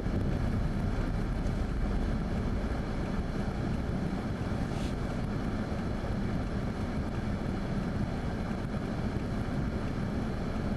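Steady low rumble of a car's interior road and engine noise, easing slightly in the first few seconds as the car slows on a wet road and comes to a stop in traffic.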